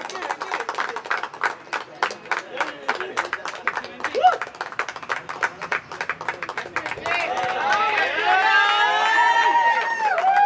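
A small group clapping hands in quick, uneven claps. From about seven seconds in, several voices shout and cheer over the clapping.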